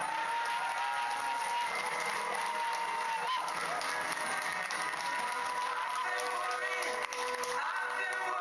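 Background music with an audience of children cheering and clapping, their drawn-out voices held over the music.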